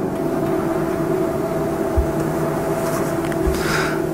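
Steady mechanical hum with several fixed pitches, the building's background machinery droning through the room, with a soft low bump about two seconds in.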